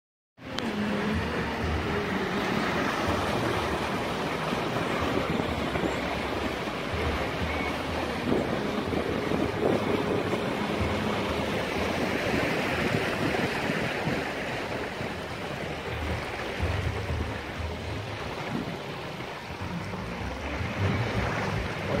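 Floodwater rushing and splashing steadily along the side of a vehicle as it drives through a deeply flooded street, with a low rumble underneath.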